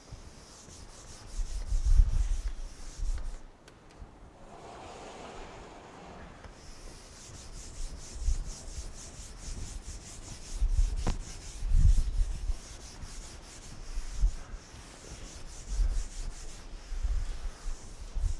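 A chalkboard being wiped clean with a cloth: repeated rubbing strokes making a steady hiss. About four seconds in the rubbing pauses for a brief, duller rushing sound. Scattered low thumps and one sharp knock about eleven seconds in.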